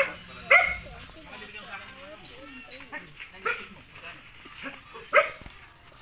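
A dog barking a few separate times, sharp single barks spaced a second or more apart, over faint voices.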